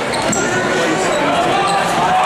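Spectators talking in the gym stands, with a basketball being dribbled on the hardwood court during play.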